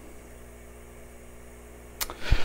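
Faint, steady low electrical hum with a little background hiss, and no other events.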